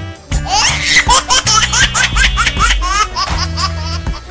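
Background music with a steady bass line, overlaid by high-pitched laughter: a quick run of short rising 'ha' syllables from about half a second in to about three seconds.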